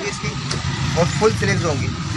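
People talking over a steady low background hum; the speech is not made out into words.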